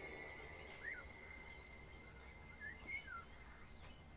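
Faint outdoor ambience: a few short bird chirps, one about a second in and a cluster near three seconds, over a faint, evenly pulsing insect-like chirr.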